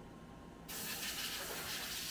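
A steady, high hiss from a Mori Seiki SH-40 horizontal machining center starts suddenly about two-thirds of a second in, over a faint low hum.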